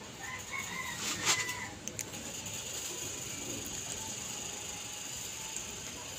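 A rooster crowing once, a call of about a second and a half, starting just after the beginning, with two sharp clicks just after it.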